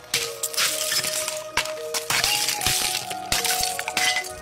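A hammer striking a clear ice shell frozen around a balloon, with repeated sharp cracks as the shell breaks and chunks of ice clink apart.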